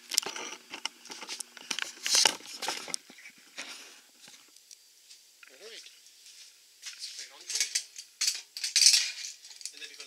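Stainless steel lid of a 5-gallon Cornelius soda keg clinking and scraping against the keg's rim as it is handled and seated in the opening, in two spells of sharp metal clicks: one at the start and another from about seven seconds in.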